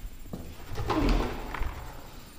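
A heavy metal door being pulled open: a latch click, then a low creaking groan from the hinges about a second in.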